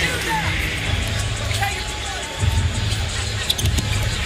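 Arena PA music with a pulsing bass beat over crowd noise at a basketball game; the bass drops back and returns louder a little past halfway. A few short, sharp squeaks and knocks from the court near the end, typical of sneakers and the ball.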